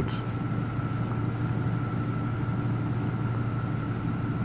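A steady low machine-like hum with a faint high steady whine above it, unchanging throughout.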